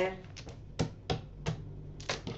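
Small divination stones being mixed by hand in a cloth pouch, clicking against each other in about half a dozen separate sharp clicks.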